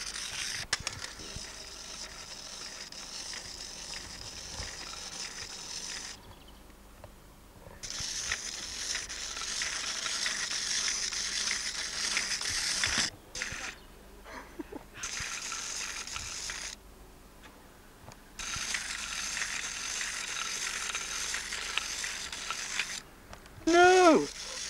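Clockwork motor of a wind-up toy worm whirring as it crawls along. It runs in several stretches of a few seconds each, broken by short pauses.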